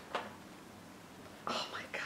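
A faint click just after the start, then about a second and a half in, a woman's short soft whisper or breathy utterance.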